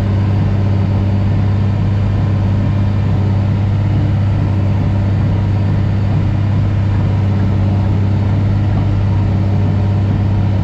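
Diesel engine of a heavy machine pulling a drainage tile plow, heard from inside the cab: a loud, steady drone at constant pitch under load.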